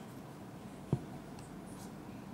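Quiet room tone between statements, with one short low thump about a second in.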